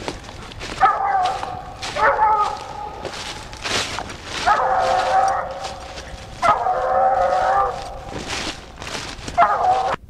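Treeing Walker coonhound baying at a tree: five drawn-out barks a second or two apart, the middle two each held about a second.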